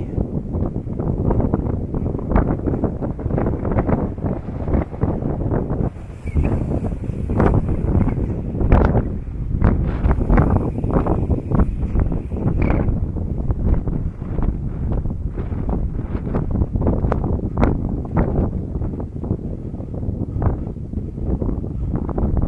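Wind buffeting the microphone of a 360° camera: a loud, low rumble that swells and drops with the gusts.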